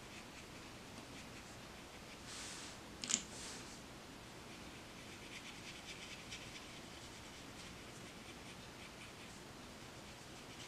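Watercolour brush strokes on paper, soft faint swishes coming and going, with one sharp light click about three seconds in.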